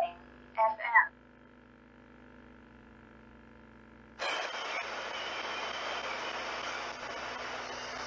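SBox Ghost Scanner spirit box sweeping the radio band: a steady hiss of radio static sets in about four seconds in. Just under a second in there is a brief voice, like the device's spoken prompt.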